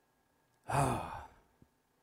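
A man's audible sigh: one breathy voiced exhale, falling in pitch, lasting about half a second, just under a second in.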